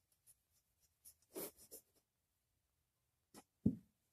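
Wood handsaw cutting through fiberglass glass-wool insulation: a few soft, scratchy strokes in the first two seconds. Two short knocks follow near the end, the second the loudest.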